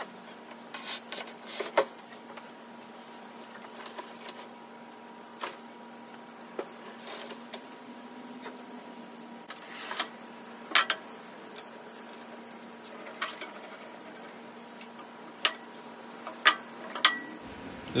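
Workshop handling sounds: scattered knocks and clicks of wooden boards being moved and a table saw's rip fence being set, with the saw not running, over a faint steady hum.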